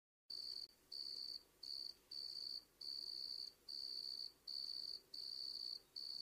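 Cricket chirping sound effect, about nine short high-pitched chirps, evenly spaced at under two a second. It is faint and follows a brief dead silence. It is the stock awkward-silence gag after an unanswered request.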